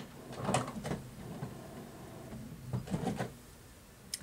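HP Officejet Pro 8600 inkjet printer starting a print job, its feed and print mechanism running, with a louder stretch of movement about three seconds in.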